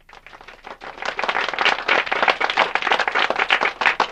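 A small group's applause welcoming a speaker: many hands clapping, swelling over the first second and then carrying on steadily.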